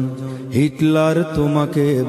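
A man singing a Bengali Islamic song in long, held, wavering notes, with no drum beat.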